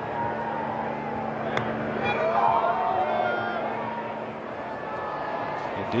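A golf chip shot struck with a wedge, one short crisp click about a second and a half in. Spectators then call out and murmur as the ball runs across the green, over steady crowd noise and a low constant hum.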